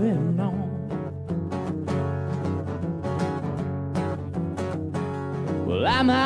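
Acoustic guitars from a live acoustic duo playing an instrumental break of a country-rock song, steady strummed and plucked notes over a low bass line. A sung line tails off just at the start and the voice comes back in near the end.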